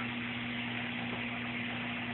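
Steady low hum with an even hiss, unchanging throughout: indoor background noise from a running appliance or fan.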